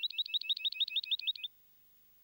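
A bird's rapid trill: a fast, even run of high chirps, about eight a second, that cuts off suddenly about one and a half seconds in.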